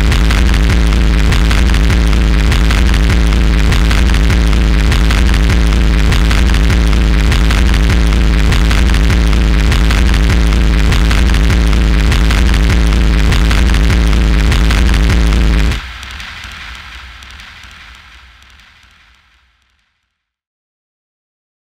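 Loud, harsh electronic noise music from synthesizers and effects: a dense wall of static-like hiss over a heavy, steady sub-bass drone. It cuts off abruptly about sixteen seconds in and a fading tail dies away to silence.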